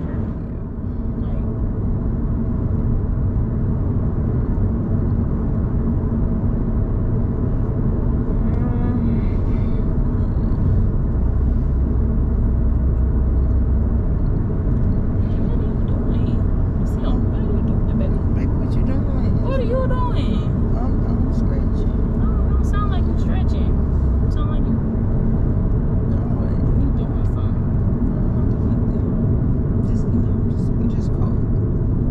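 Steady rumble of road and engine noise heard inside the cabin of a moving car.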